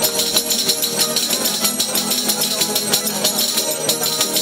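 Murcian cuadrilla folk music played without singing: a strummed guitar with frame-drum tambourines shaken and struck in a quick, steady rhythm of jingles, and hands clapping along.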